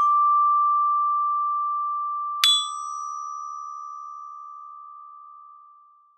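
Orchestra bells (a student glockenspiel bell kit) struck with a mallet. A D rings on and slowly decays, then about two and a half seconds in an E-flat just above it is struck once and rings, fading out near the end.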